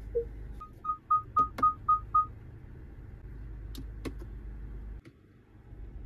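A car's parking-assist chime: one short low beep, then seven quick high beeps at about four a second, as the surround-view camera switches to the rear view. A few light taps on the touchscreen follow, over a steady low cabin hum.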